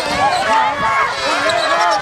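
Many children's voices shouting and cheering at once, overlapping without a break.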